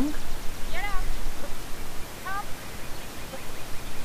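A woman calling two short, high commands to her dog from across an agility field, one about a second in and one just after two seconds, over a steady outdoor hiss.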